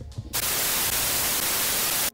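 Television static sound effect: a steady, even hiss of white noise that starts about a third of a second in and cuts off abruptly at the end.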